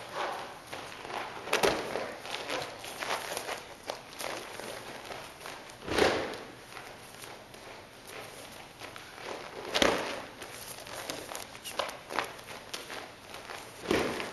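Bare feet shuffling and stepping on padded exam mats, with four loud thuds about four seconds apart as the thrown partner lands in a breakfall on the mat each time.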